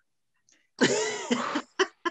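A woman laughing: a long breathy laugh about a second in, then two short laugh bursts near the end.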